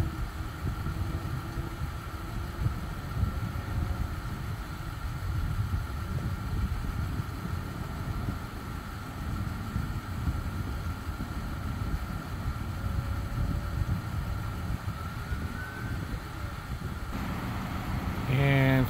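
Car engine idling steadily, a low even rumble, with a faint steady high-pitched whine over it.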